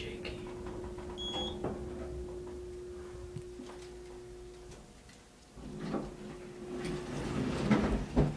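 Hydraulic passenger elevator running with a steady low hum as the car travels up, cutting off about five seconds in as it stops at the floor, with a short high beep about a second in. Near the end the single-speed door slides open with rumbling and knocks.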